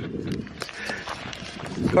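A man laughing softly, with wind rumbling on the camera microphone.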